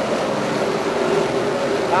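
A pack of 358 dirt modified race cars' small-block V8 engines running together around the track, heard as one steady, even drone.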